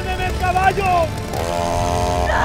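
A chainsaw engine running and revving, with a man's wordless yelling over it.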